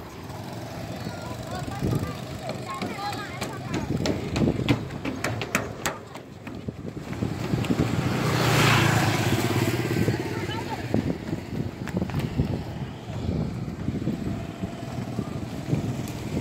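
A motorbike riding across the steel-plate deck of a suspension bridge, growing louder as it passes close about eight to nine seconds in, then fading away. Sharp clanks and rattles from the steel deck come through in the first half.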